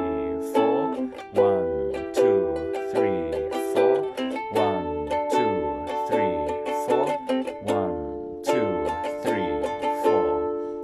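Mahalo ukulele strummed about once a beat, each chord ringing between strokes. It moves through the A major, E minor, D major and D minor progression, changing chord every four strums.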